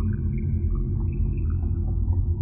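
A deep, steady rumbling drone with faint high tones sounding here and there above it. This is an edited intro soundtrack.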